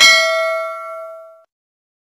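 Bell-like notification ding from a subscribe-button animation: one struck, ringing tone with bright overtones, fading away over about a second and a half.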